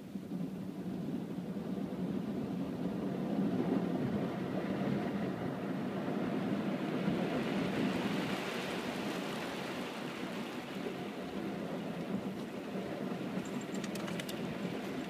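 Automatic car wash heard from inside the car: a steady rush of water and washing against the windshield and body. It swells in the first few seconds and grows brighter past the middle.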